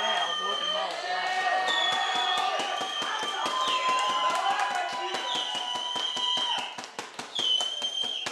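Shouting voices from players and spectators at a rugby match, with drawn-out high calls. Through the middle comes a fast, even run of sharp knocks, about six a second.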